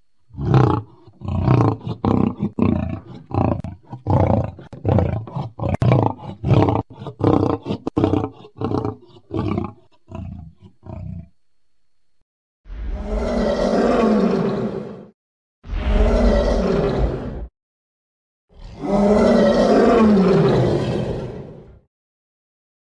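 Homemade Tyrannosaurus rex sound effects: first a long run of short, choppy growl-like pulses, two or three a second, then three long roars, each bending up in pitch and then falling away, the last the longest.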